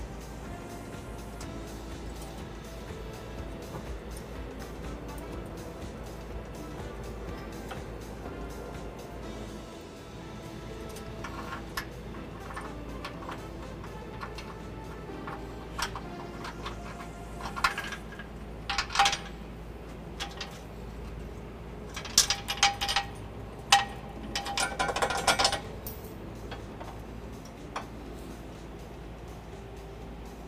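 Background music throughout, with a scatter of sharp metallic clinks from about a third of the way in to near the end: steel hitch hardware (bolts, washers and nuts) knocking against each other and the frame while being fitted by hand.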